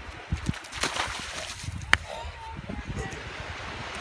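Bare feet splashing and sloshing through a shallow stream of water over sand, a few irregular steps, with a sharp click about two seconds in.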